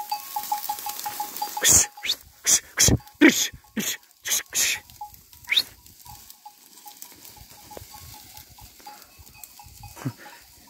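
Sheep grazing in tall, dry standing wheat: loud rustling and crackling of the stalks in a run of sudden bursts through the first half, with a sheep's bleat among them. A faint, rapid ticking carries on behind.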